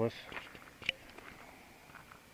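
Faint footsteps on gravel, with one sharper click about a second in.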